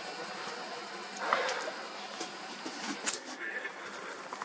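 Night-time outdoor ambience: a steady, high chirring of crickets over a soft hiss, with a few small clicks, the sharpest about three seconds in.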